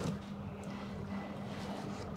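A portable semi-automatic washing machine's motor runs with a steady low hum while clothes are pushed into its water-filled tub.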